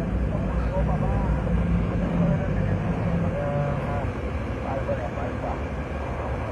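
Steady low rumble of a passenger van's engine and road noise heard from inside the cabin while it drives, with faint voices in the background.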